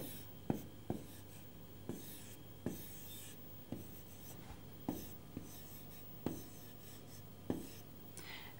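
Marker pen writing on a board: faint strokes of the tip across the surface, with short taps roughly once a second as the tip touches down.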